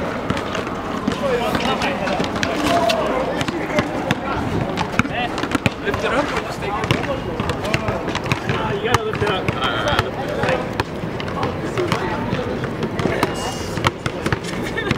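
Basketball bouncing and being dribbled on a hard outdoor court, a scatter of sharp knocks, over people talking in the background.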